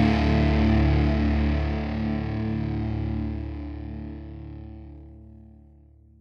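Heavily distorted electric guitar chord left ringing at the end of a hardcore song, holding for about two seconds, then slowly fading out to near silence.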